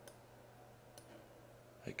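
Near silence: faint room tone with a low hum, and one faint click about a second in from a computer mouse button as a shape is drawn on screen.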